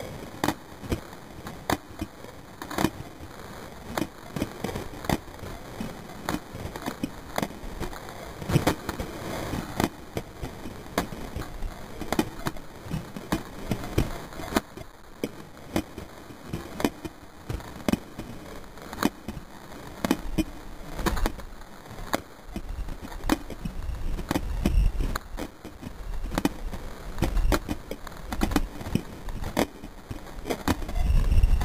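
Horse's hoofbeats on asphalt road in a steady, regular rhythm of sharp clops as a ridden gaited mare moves along in her natural gait. A low rumble builds under the hoofbeats in the last third.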